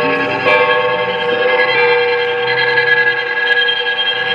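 Improvised experimental music from electric guitars run through effects pedals: layered sustained, ringing tones that shift to new pitches about half a second in and again near two seconds.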